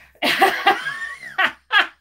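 A woman laughing heartily: a breathy run of laughs, then two short bursts near the end.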